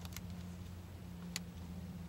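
Short, sharp clicks of a car dash clock's hour button being pressed: two in quick succession at the start and another about a second later, over a steady low hum.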